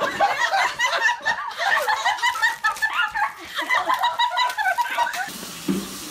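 People laughing hard in quick, repeated high-pitched bursts, which stop about five seconds in.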